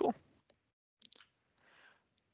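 A short spoken "Cool", then two quick clicks about a second in, made on the computer as the slide is advanced.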